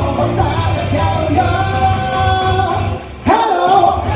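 A man singing a rock song into a microphone over loud amplified rock music, holding long notes. About three seconds in the music drops out for a moment, and the voice comes back on a held note.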